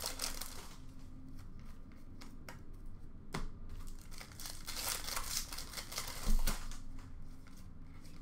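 Hockey card pack wrappers crinkling and tearing as packs are ripped open, with cards being handled; sharp snaps about three seconds in and again past six seconds.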